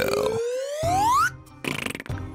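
Comedy sound effect: one whistle-like tone that rises steadily in pitch for about a second and a half, then stops abruptly, over background music.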